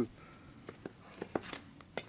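Footsteps crunching in snow: a few faint, sharp crunches scattered through the second half.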